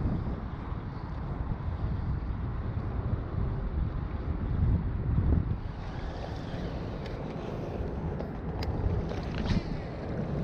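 Wind buffeting the microphone, with water lapping at the shoreline rocks; a steady rumbling noise with no distinct events.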